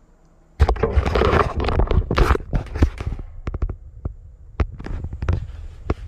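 Close rustling with many sharp knocks and clicks, starting suddenly about half a second in, loudest over the first two seconds, then thinning to separate knocks: handling noise as the recording phone is picked up and moved to a new spot.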